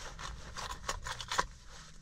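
Quiet, irregular light scrapes and clicks of hands rummaging around a car's cabin while searching for the key, with a sharper click about a second and a half in.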